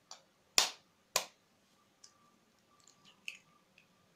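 Kitchen knife blade tapped against a raw chicken egg's shell: a light tap, then two sharp cracks about half a second apart that break the shell. A few faint crackles follow as the cracked shell is pried open.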